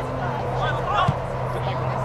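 Voices of players and spectators calling out across an open sports field, over a steady low hum. A single short thump comes about a second in.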